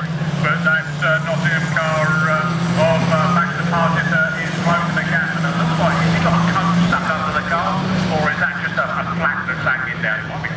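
Several small saloon race cars' engines running and revving together on a dirt track, with a steady low drone under rising and falling engine notes.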